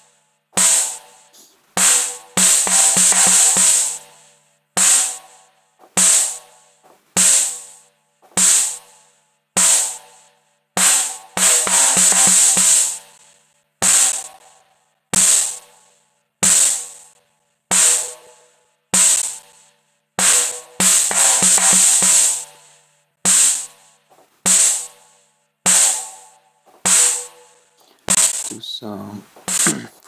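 A soloed drum part playing back from a mixing session: sharp drum hits about every 1.2 seconds, each dying away to silence between strokes, with a longer bright cymbal-like wash three times, roughly every nine seconds.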